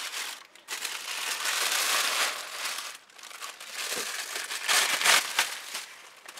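Tissue paper crinkling and rustling as it is pulled out of a doll box. It comes in two spells with a short pause about three seconds in, and the second spell ends with a few sharp crackles.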